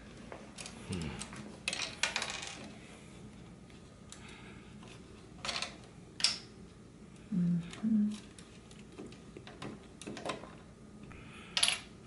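Hard plastic Lego bricks clicking and rattling as pieces of a built castle are handled and pulled apart by hand: a handful of sharp, separate clicks with quiet gaps between them.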